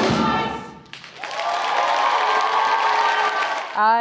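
A stage chorus with musical backing ends its number, cutting off under a second in. Audience applause and cheering follow.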